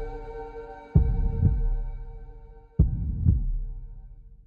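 Trailer sound design: deep double thuds in a heartbeat rhythm, two pairs a little under two seconds apart, each dying away, over a held chord that fades out.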